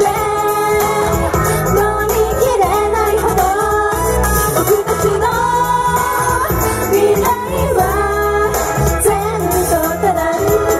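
Female idol group singing a J-pop song live into handheld microphones over pop accompaniment, heard through stage PA speakers.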